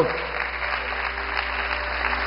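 Church congregation applauding, a steady even clapping.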